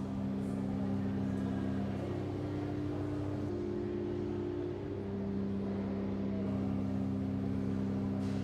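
Pipe organ playing slow, sustained chords over a held low bass note, the upper notes changing every second or two.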